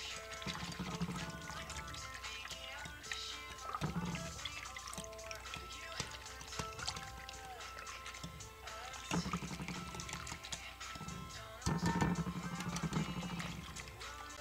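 Background music playing over a wire whisk beating a liquid mix of eggs, water and oil in a bowl.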